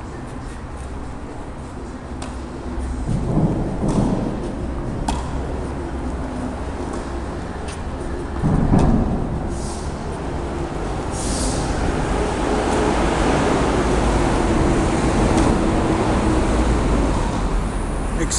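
Tennis ball struck back and forth by rackets in a rally, sharp hits every couple of seconds, over a steady low rumble that swells louder in the second half.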